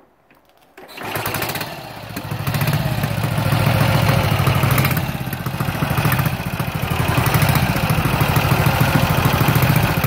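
A 1954 Ariel NH 350cc single-cylinder engine starting, catching about a second in, then running with the revs rising and falling a few times.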